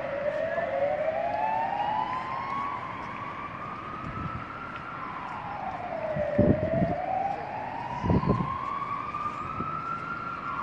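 Emergency vehicle siren wailing in slow rises and falls, about one rise and fall every five seconds, with a second siren slightly out of step near the start. A few short low thumps about four, six and a half and eight seconds in.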